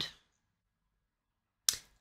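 A word trailing off at the start, then near silence broken by a single sharp click about a second and a half in.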